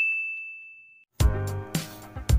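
A single bright ding, the notification-bell sound effect of a subscribe animation, ringing out and fading away over about a second. Guitar music starts just after it.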